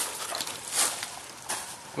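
Leafy branches rustling close to the microphone, with two brief scuffs, one a little under a second in and one at about a second and a half.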